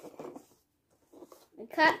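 Speech only: a child talking in a small room, with a short pause of near silence in the middle.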